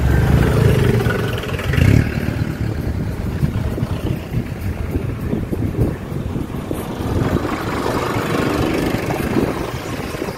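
Traffic heard close up from a car in slow-moving traffic: engines of scooters and cars running as they pass, loudest in the first two seconds, over a steady rumble of engine and road noise.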